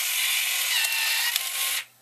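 CTD-202 card dispenser mechanism running its motor-driven rollers to feed out a card: a steady mechanical whir that cuts off sharply near the end.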